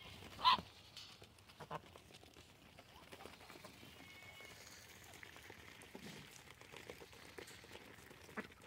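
Faint sounds of white domestic ducks feeding on pellets, with soft pecking and scattered small ticks, and one short louder sound about half a second in.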